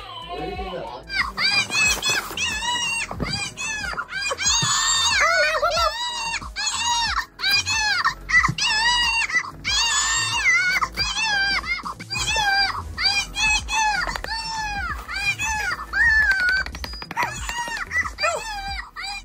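RealCare infant simulator doll crying for a feeding: a run of short, high-pitched rising-and-falling wails, about two a second, starting about a second in. It keeps crying because the care has not been logged with the caregiver's ID bracelet.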